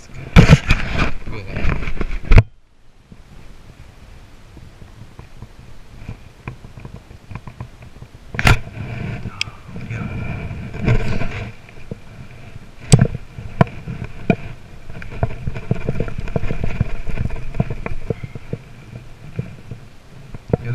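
Heavy rubbing and knocking of clothing against a body-worn camera's microphone, loudest in the first two seconds, then fainter rustling with a thin steady whir and a few sharp clicks.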